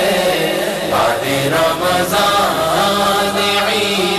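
Devotional chanting: voices singing a religious recitation in a continuous, gliding melody.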